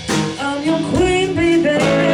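A live rock band playing: a woman sings lead over electric guitar and drums.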